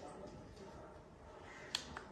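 Quiet room tone, then a sharp click near the end followed by a fainter one: the button being pressed on an automatic upper-arm blood pressure monitor to start a reading.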